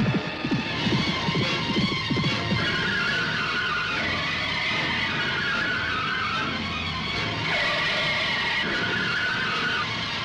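Action-film soundtrack: background music over vehicle engine sounds, with engines revving up and down in the first few seconds.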